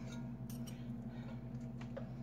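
Knife and fork clicking and scraping against the inside of an enamelled pot as pot roast is cut in it, with a few sharp clicks over a steady low hum.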